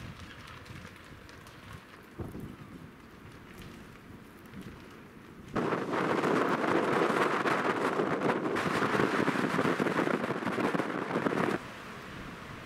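Snowstorm wind outside, at first a low rushing, then about halfway in a loud blast of wind buffeting the microphone with wind-driven snow, which starts and stops abruptly after about six seconds.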